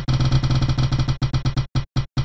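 Spinning prize-wheel sound effect: a fast run of short electronic ticks that slows down, the ticks spacing further and further apart as the wheel comes to rest.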